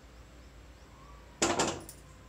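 A frying pan set down on a gas stove's metal grate: one short clattering clunk about one and a half seconds in.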